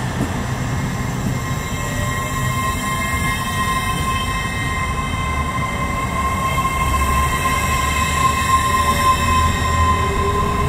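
An LNER Azuma (Hitachi) train running slowly alongside a platform, with a steady rumble of wheels on rail. A thin, steady high whine joins in about a second in, and the low rumble grows heavier in the second half.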